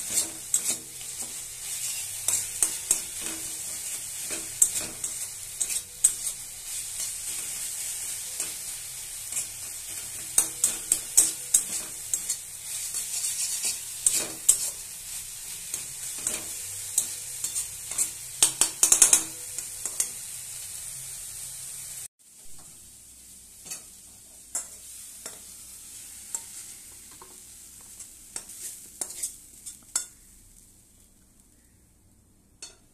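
A spatula scraping and knocking against a metal wok while stirring grated bottle-gourd peel, over a steady frying sizzle. About two-thirds of the way through, the sizzle stops abruptly, leaving quieter, scattered clicks of the spatula.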